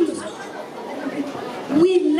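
Only speech: a voice trailing off and another starting again near the end, with background chatter of a gathered crowd in between.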